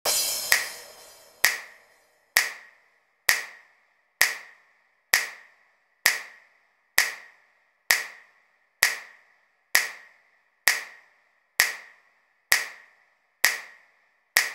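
Intro of a house club mix: a lone electronic handclap repeating evenly about once a second, each with a short ringing tail. It opens with a burst of hiss that fades over about a second and a half.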